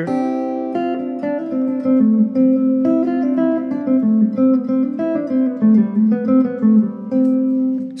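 Clean electric guitar playing a melodic phrase of triad shapes that move with the chord changes, with added scale notes, a steady run of notes, often two or three sounding together.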